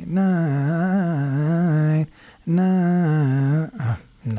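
A man's voice singing a wordless vocal run with a quickly wavering pitch, in two phrases: one about two seconds long, then a short break, then one of about a second.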